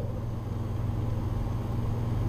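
Steady low hum with a faint even hiss: background noise of the recording setup, with no clicks or other events.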